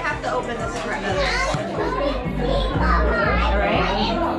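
Several children's voices chattering and calling out over one another, with background music carrying a pulsing bass beat.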